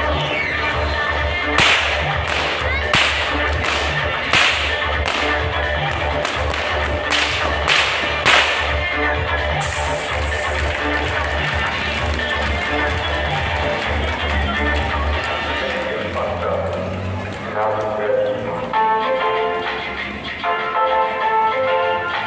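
A whip cracked sharply about eight times in the first nine seconds, over loud music with a steady beat. About ten seconds in there is a short burst of hiss from a stage smoke jet, and the music then turns more melodic.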